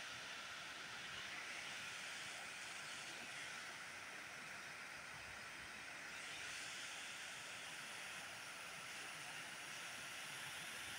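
Steady rushing of river water pouring past a brick weir wall, an even hiss with no breaks.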